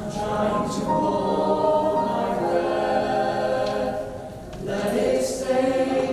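Mixed-voice choir singing in harmony, with a short break between phrases about four seconds in.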